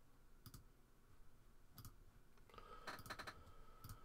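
Near silence broken by a few faint clicks from computer input at a desk: single clicks about half a second and two seconds in, a quick run of several near three seconds, and one more near the end.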